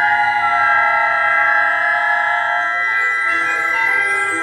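A symphonic concert band playing long sustained chords, the upper voices stepping slowly from one held note to the next. About three seconds in, more notes enter lower down and the texture thickens.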